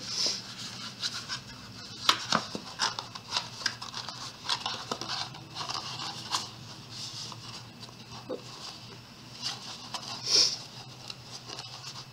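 Cardstock being folded and creased by hand into a small box: scattered crinkles, rustles and light taps, with a louder crinkle about ten seconds in.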